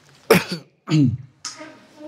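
A man coughing to clear his throat: two loud, short coughs about a third of a second and a second in, followed by a smaller one.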